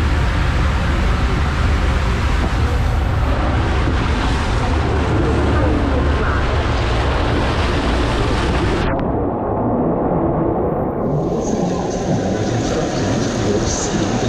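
Rushing water and a rider's mat sliding at speed down a ProSlide KrakenRACER mat-racing water slide: a loud, steady rush with a deep rumble. About nine seconds in, as the ride comes out into the splashing runout lane, the sound suddenly turns muffled.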